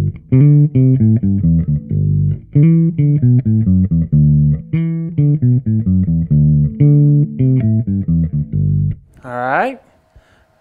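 Gibson ES-Les Paul Bass played through a Trace Elliot Elf 200-watt bass head and 1x10 cabinet, a riff of short plucked notes with the amp's treble turned down to about 9 o'clock. The playing stops about nine seconds in.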